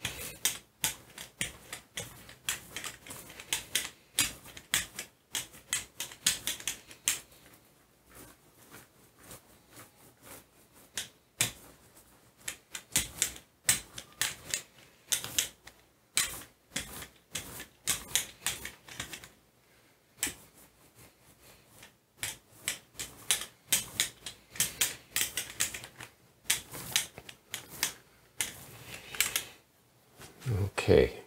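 A 4-inch brayer rolled back and forth through bronze acrylic paint over a Gelli plate and stencils, making a rapid, clicky crackle in bursts, with two quieter pauses between rolls.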